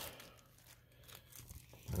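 Faint crinkling of a clear plastic packaging bag as hands handle the parts, a few brief crinkles in the second half.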